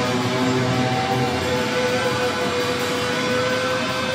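Heavy metal band playing live: an electric guitar holds long ringing notes, and the heavy low bass part thins out within the first second.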